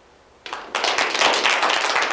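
Audience applauding, starting about half a second in and growing fuller a moment later.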